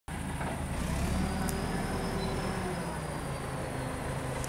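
Wheel loader's diesel engine idling steadily: a low, even rumble with a faint thin whine above it.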